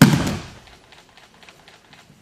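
An aikido partner's body landing on the training mat in a breakfall after a throw: one heavy thud and slap right at the start, dying away within about half a second.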